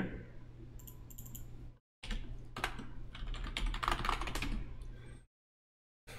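Computer keyboard typing: a run of keystrokes and clicks as a Windows login password is entered. The sound drops out to dead silence twice, briefly.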